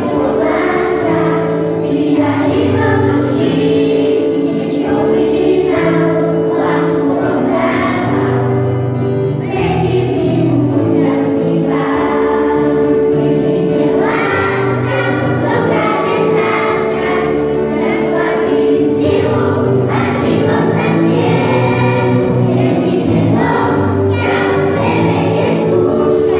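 Children's choir singing a Christmas song in unison, accompanied by acoustic guitar, with held notes.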